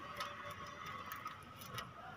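Faint, irregular small clicks and ticks of a screw being worked loose from a Tata Nano's door-mirror mount by hand.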